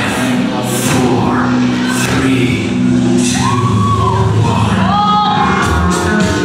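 Music with a singing voice over sustained chords.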